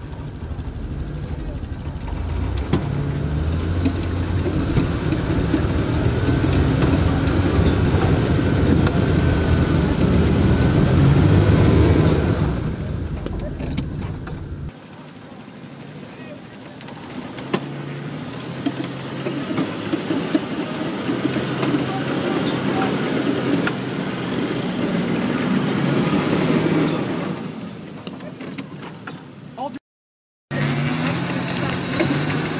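Jeep engine running and revving under load while off-roading, getting louder over the first twelve seconds. A sudden change about halfway through gives way to a Jeep's engine running as it wades through deep muddy water.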